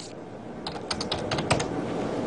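Computer keyboard being typed on: a quick run of about a dozen keystrokes lasting about a second.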